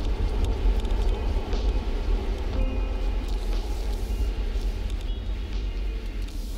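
Low, steady rumble with a hiss above it, slowly fading out: the wordless ambient outro of an album track.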